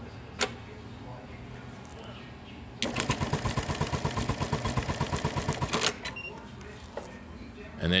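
Juki LK-1900BN computer-controlled bar-tacking sewing machine sewing a 24-stitch tack through heavy drapery at about 500 stitches a minute: a quick, even run of needle strokes, about eight a second, lasting about three seconds. A single sharp click comes about half a second in, before the stitching starts.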